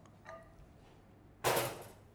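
Cookware set down on a stainless steel counter: a faint clink shortly after the start, then one loud, short clatter about one and a half seconds in that dies away quickly.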